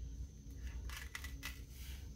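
Faint, light clicks and paper rustles from fingers working a long strip sticker on a sheet of planner stickers, over a low steady room hum.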